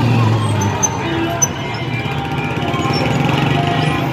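Busy street celebration: traffic of cars and motorbikes running past, mixed with music and the voices of a crowd.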